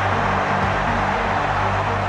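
Stadium crowd cheering loudly for a goal, over a steady low music bed.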